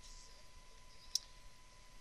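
Glossy Bowman Chrome baseball cards being thumbed through in the hand: a faint rustle near the start, then one sharp click about halfway through as a card snaps against the stack.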